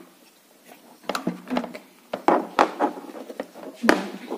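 Hard plastic clicks and knocks from working a Play-Doh ice cream maker toy and handling its plastic parts. An irregular string of sharp clicks starts about a second in, and the sharpest comes near the end.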